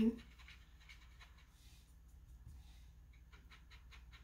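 Faint, irregular scratching of a paintbrush scrubbing and mixing watercolour paint in the plastic lid of a paint tray, over a low steady hum.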